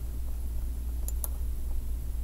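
A steady low hum, with two quick clicks about a second in from a computer mouse selecting text.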